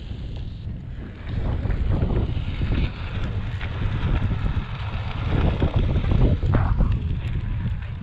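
Wind buffeting the microphone in gusts over a low rumble of a Onewheel's tyre rolling on asphalt. Faint voices come through about five to seven seconds in.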